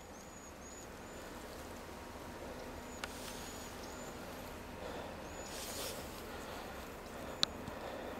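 Faint outdoor ambience with small groups of short, high chirps from an animal, repeated several times, and a sharp click near the end.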